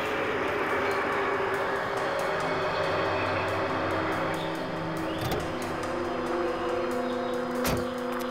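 Traffic passing over a road bridge, a rushing noise that fades about halfway through, under sustained background music; a single thud near the end.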